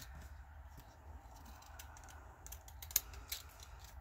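Decorative-edge craft scissors snipping through a folded, glued-together book page in a series of short cuts, with the sharpest snip about three seconds in.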